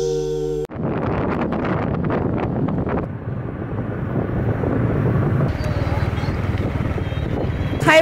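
The last held note of a short music jingle cuts off sharply, giving way to steady wind rumble on the microphone and motorbike running noise while riding along a road. The buffeting is gustiest in the first couple of seconds and then settles.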